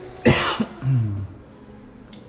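A person coughs once, sharp and loud close to the microphone about a quarter second in, followed by a short low throat-clearing sound.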